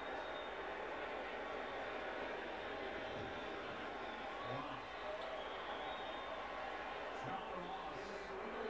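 A television playing an American football broadcast: a steady wash of stadium crowd noise with the commentator's voice now and then.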